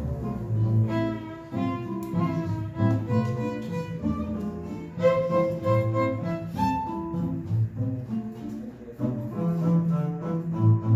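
A violin, acoustic guitar and plucked double bass playing a tune together live, a melody of changing notes over a steady bass line.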